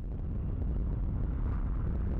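Avro Vulcan jet bomber flying past, its four Rolls-Royce Olympus turbojets giving a steady low rumble.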